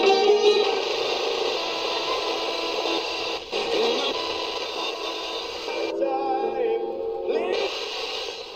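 Music from FM broadcast stations playing through the loudspeaker of a TEF6686 DSP radio receiver as it is tuned across the band. The programme cuts abruptly to different audio a few times as new stations come in.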